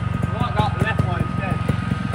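Trials motorbike running at low speed, with voices over it.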